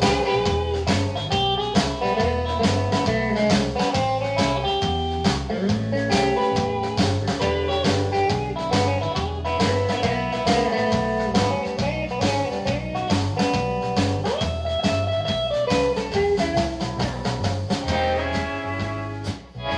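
Live rockabilly/honky-tonk band playing an instrumental break: a Telecaster electric guitar takes the lead over bass and a drum kit keeping a steady beat.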